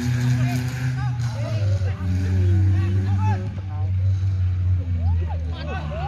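An engine running steadily close by, its pitch dropping about a second in and rising again near the end, with shouts from players and onlookers over it.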